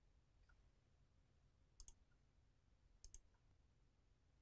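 Two faint computer mouse clicks about a second and a quarter apart, each a quick double tick of press and release, opening the Document Setup dialog; between them, near silence.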